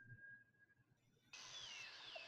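Near silence. In the second half a faint hiss comes in, with a few faint falling chirps.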